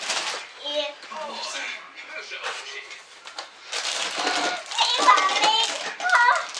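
Cardboard toy box being opened and its packing handled, with rustling and scraping of cardboard, busiest near the end. A young child's voice is heard over it.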